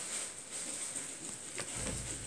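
Soft handling noise from a paper leaflet and a small cardboard toy box being moved about, with a few faint ticks and a low bump near the end.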